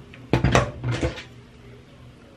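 A quick clatter of hard objects knocking together, several sharp knocks within about a second.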